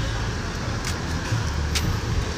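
Low, steady rumble of intercity buses idling, with two faint ticks about a second apart.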